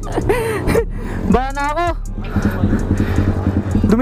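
Two short, drawn-out vocal exclamations with a wavering pitch in the first two seconds. After that comes a steady low rumble, with music underneath.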